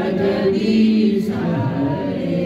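A group of voices singing a slow devotional chant, holding long steady notes.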